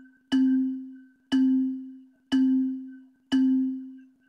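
Quizizz game countdown sound: a low chime note struck once a second, four times, each ringing out and fading before the next.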